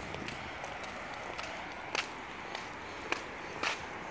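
Footsteps on brick paving, about five scattered steps, over a steady outdoor background hum.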